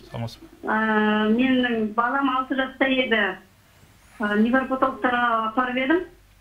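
Speech: a voice talking in short phrases, with a brief pause about three and a half seconds in.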